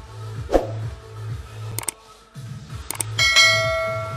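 Background dance music with a steady bass beat, overlaid by a subscribe-button animation sound effect. A few sharp clicks are followed, a little over three seconds in, by a bright notification-bell chime that rings on.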